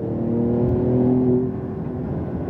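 Porsche 911 Turbo S's twin-turbo flat-six engine, heard from inside the cabin, pulling at a fairly steady pitch over road noise, then easing off about one and a half seconds in.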